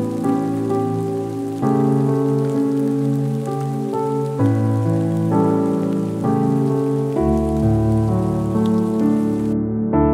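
Slow, soft piano music with the sound of steady rain laid over it; the rain stops suddenly near the end while the piano chords carry on.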